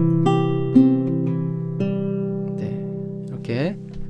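Antonio Lorca 1015 nylon-string classical guitar played fingerstyle: a slow arpeggio over a C chord, with the pinky adding the third-fret note on the first string. The notes are plucked about half a second apart and then left ringing and fading.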